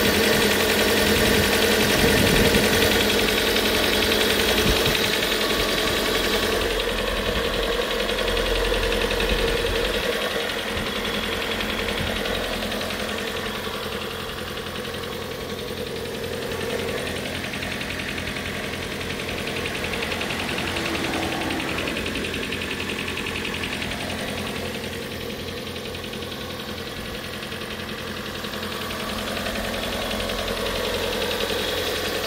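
Four-cylinder petrol engine of a 2014 Hyundai Sonata Hybrid running steadily at idle, heard from close over the open engine bay. It is louder for the first ten seconds or so, then settles quieter.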